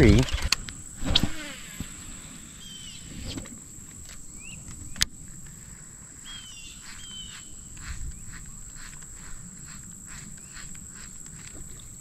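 Insects droning in a steady high-pitched tone, with a few short falling bird chirps and one sharp click about five seconds in.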